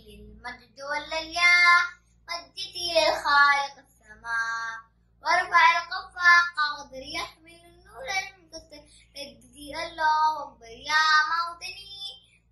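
A young boy singing unaccompanied, in phrases with short pauses between them.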